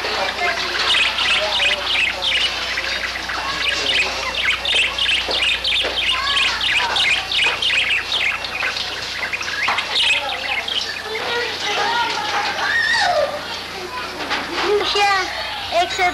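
Several small caged birds chirping rapidly and continuously, with a person's voice in the background near the end.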